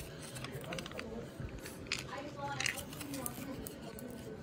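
Faint light clicks and handling noises, with a faint murmur of a voice about two seconds in.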